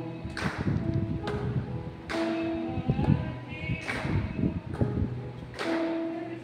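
A woman singing a slow hymn solo through a PA system, holding long notes, with an uneven low rumble of fan wind on the microphone underneath.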